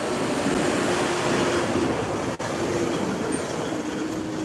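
Steady city background noise: a continuous rushing haze with a faint steady hum under it, typical of surrounding traffic and building ventilation. It drops out for a moment a little over halfway through.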